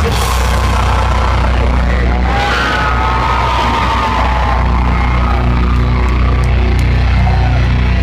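Metalcore band playing live at full volume: distorted guitars over a steady low bass, with the singer's voice over the top.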